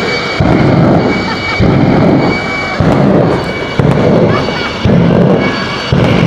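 Jet engine of a jet-powered school bus running with a steady high whine, and about once a second a loud whoomp as extra fuel injected into the exhaust flame ignites.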